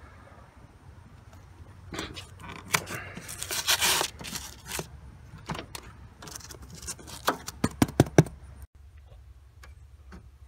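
Tape being peeled off the window frame around a window air conditioner, with a longer tearing rasp about four seconds in. A quick run of sharp clicks follows near the end as the unit is handled.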